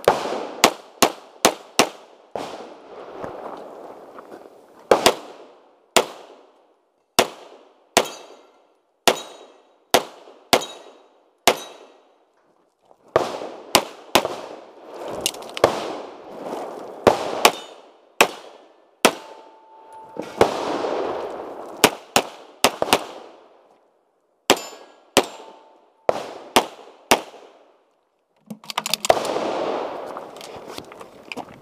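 A pistol fired in quick strings of shots during a timed multigun stage, with short pauses between strings. Some hits leave a brief metallic ring from steel targets. Footsteps crunch on gravel as the shooter moves between shooting positions.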